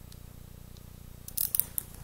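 Handling noise at a desk: a brief rustle and a few sharp clicks about one and a half seconds in, over a low steady hum.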